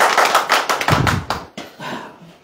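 A small group of people clapping their hands in applause, the claps thinning out and stopping about one and a half seconds in.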